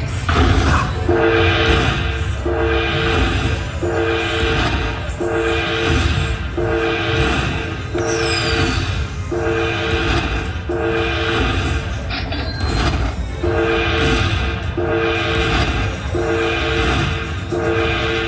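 A Dragon Link video slot machine plays its win-rollup chime as the bonus payout counts up on the win meter. It is a repeating chord that pulses about once every 1.3 seconds, with a short break about twelve seconds in.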